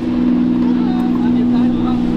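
Sports-car engine running at low, steady revs as the car rolls slowly past, a constant deep hum with no revving.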